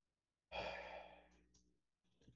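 A person sighing: one breathy exhale about half a second in, fading away over about a second.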